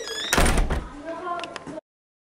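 A loud thump about half a second in, followed by a brief voice-like sound. The audio then cuts to silence shortly before the end.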